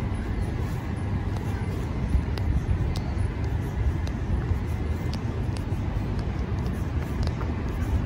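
Outdoor city ambience on a rooftop: a steady low rumble of distant traffic, with a few faint ticks scattered through it.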